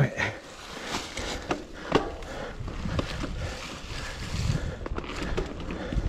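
Mountain bike rolling along a dry, leaf-covered dirt and rock trail: steady tyre noise with sharp knocks and rattles from the bike over bumps about one, two and three seconds in. A low wind rumble on the helmet camera grows from about four seconds.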